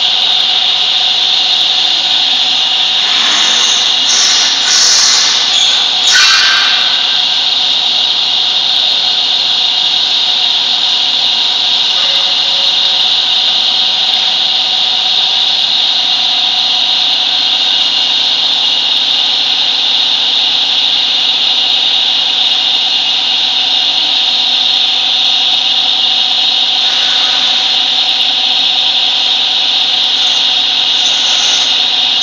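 MIC L30 semi-automatic aluminum tube filling and sealing machine running, its electric motor and drive making a loud, steady mechanical noise with a high hiss. A few brief rougher scraping noises come about three to six seconds in.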